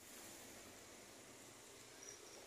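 Near silence: a faint, steady background hiss with no distinct sounds.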